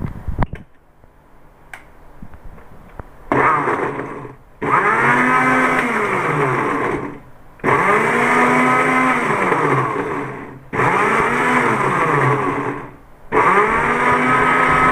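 Electric mixer grinder blending frozen banana chunks with cream, run in about five short pulses that start a few seconds in, the motor's pitch rising and then falling within each run. It is run slowly in bursts rather than at full speed in one go, to spare the blade.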